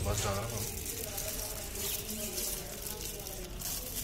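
Faint voices in the background, with the rustle and crinkle of tissue paper being worked into the end of a metal pipe.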